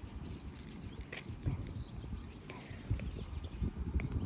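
Quiet outdoor ambience with a low wind rumble on the microphone, a short high bird trill about half a second in, and a few faint clicks as a plastic water bottle is picked up and handled.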